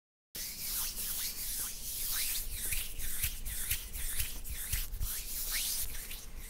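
Close-miked wet, sticky squishing of squid ink spaghetti with shrimp, a quick run of squelches and small squeaks several times a second, starting abruptly about a third of a second in.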